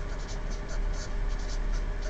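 Felt-tip marker writing a word on a paper card: a run of short, light scratching strokes.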